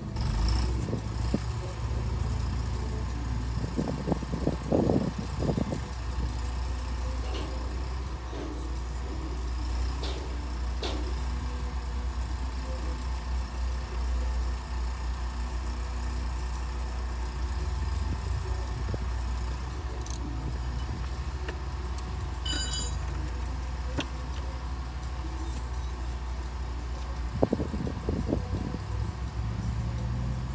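Steady low rumble of an idling vehicle engine, with scattered clicks and rustles of handling, louder bursts of rustling about four seconds in and near the end, and a brief high tone about two-thirds of the way through.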